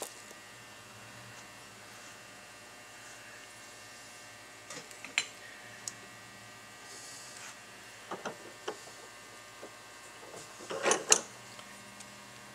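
Light clicks and clinks of metal parts being handled as a Fispa SUP150 mechanical fuel pump is taken apart, its casting and diaphragm lifted off. A few scattered taps in the middle, and a louder cluster of clinks near the end.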